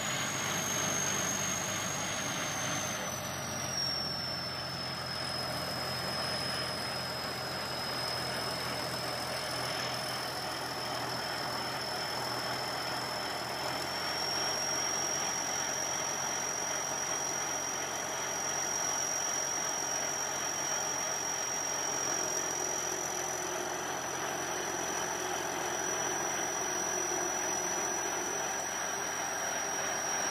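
Rice combine harvester running steadily at work while unloading grain through its auger. A high whine sits over the engine; it drops in pitch about three seconds in and climbs partway back about halfway through.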